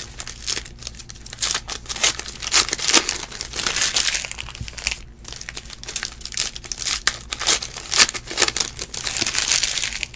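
Plastic trading-card pack wrappers crinkling as they are handled and torn open, with cards shuffled in hand, in an irregular crackle full of sharp snaps.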